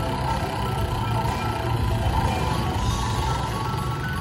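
Slot machine bonus-wheel music playing steadily while the wheel spins, with a low steady rumble underneath.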